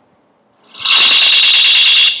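Loud, harsh high-pitched squeal of audio feedback from a newly created, record-armed audio track in Logic Pro. It starts abruptly less than a second in, holds steady for just over a second, then cuts off.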